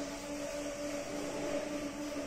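A steady, even hum at one low-middle pitch with fainter higher tones above it, like a small motor or appliance running.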